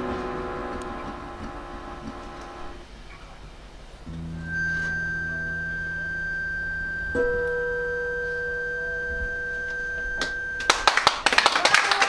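Closing of a live acoustic band song: a chord on the guitars, bayan and saxophone rings out and fades. The band then holds long, steady final notes, and audience applause breaks out near the end.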